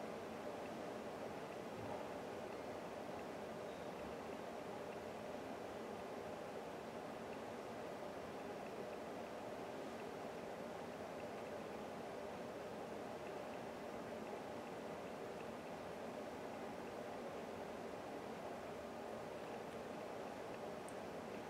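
Steady, faint background noise of room tone, an even hiss with no distinct events.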